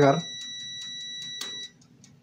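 Digital multimeter's continuity beeper giving a steady high-pitched beep, then cutting off suddenly near the end after a single click, as the oven's timer switch is turned off and opens the circuit. The beep signals zero resistance through the closed switch, and its stopping shows that the switch opens and closes properly.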